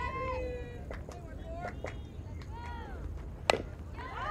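A softball bat hits a pitched ball with one sharp crack about three and a half seconds in. Players shout short calls across the field before the hit.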